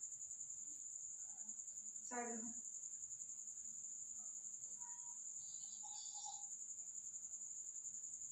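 Faint, steady, high-pitched insect trill that pulses rapidly throughout, with a brief vocal sound about two seconds in.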